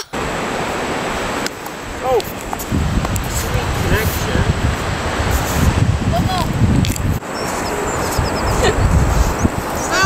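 Wind buffeting the microphone, a steady rushing noise with heavy rumbling gusts in the middle and again near the end, faint distant voices under it.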